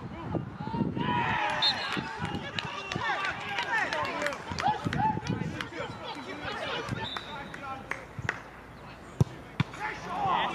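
Several men's voices shouting and calling out on a football pitch, overlapping, fading after about the middle. Two sharp knocks, like a ball being kicked, near the end.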